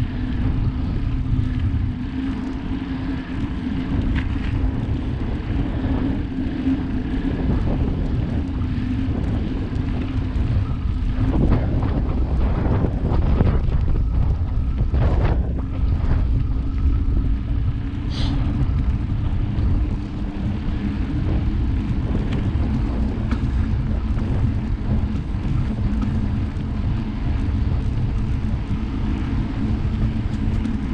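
Wind rushing over a bike-mounted action camera's microphone while a plus-tyred mountain bike rolls along asphalt, with a steady hum from the knobby tyres underneath. The rush swells louder for a few seconds midway.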